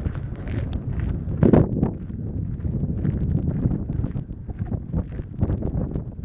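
Wind buffeting the microphone with a steady low rumble, rising in a stronger gust about a second and a half in, over scattered footsteps on a frosty gravel path.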